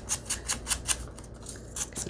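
Ink-blending brush scrubbing along the edge of a paper strip in quick scratchy strokes, about six or seven a second, distressing the edge with ink.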